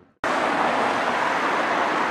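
Steady running noise of a moving vehicle heard from inside, as a loud, even rush; it starts abruptly a fraction of a second in, after a moment of silence.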